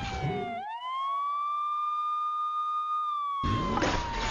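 Emergency vehicle siren wailing: the tone sweeps up quickly about half a second in, holds high for a couple of seconds, then begins a slow fall. A dense mix of other noise under it drops out during the high hold and comes back with a sudden rush near the end.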